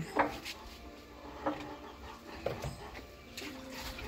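A few faint, scattered bird calls, like a dove cooing.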